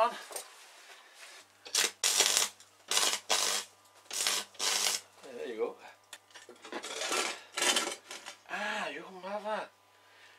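Welder making a series of short tack welds on a steel skull, about seven crackling bursts of roughly half a second each, with a faint steady electrical hum from the welder underneath.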